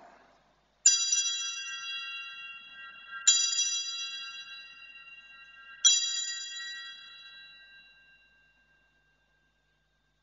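Altar bells rung three times, about two and a half seconds apart, each ring a cluster of high bell tones that fades out slowly. This marks the elevation of the chalice at the consecration of the Mass.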